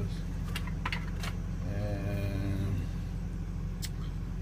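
A handful of sharp clicks and taps from handling objects, four in the first second and a half and one more near the end, over a steady low hum in a vehicle cab.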